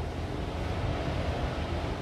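Steady background noise in a pause in speech: a low rumble under an even hiss, with no distinct event.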